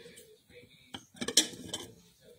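Wax dish of a Scentsy warmer clinking against the rim of its lampshade as it is lifted off: one light click, then a short cluster of clinks about a second in.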